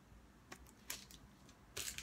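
Souvenirs in clear plastic packaging being handled: a few faint clicks, then a short rustle of plastic near the end.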